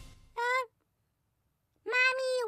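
A cartoon monster's high, squeaky vocal sounds: one short call about half a second in, then a longer, slightly wavering call starting near the end.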